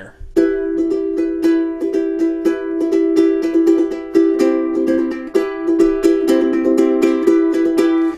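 Ukulele strummed steadily, switching back and forth between E minor and C chords, the chord changing a few times over the strumming.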